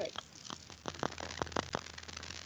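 Static on an open microphone line in a video call: irregular crackles and clicks over a low hum, heard as a terrible background noise.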